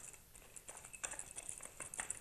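Wooden rolling pin rolling out dough on a floured marble counter: faint, irregular light clicks and taps.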